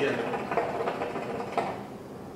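Hookah water bubbling as smoke is drawn through the hose: a rapid gurgle that stops near the end.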